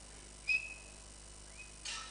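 A short, steady high whistle about half a second in, then a fainter whistle that rises into the same pitch near the end, followed by a brief burst of noise.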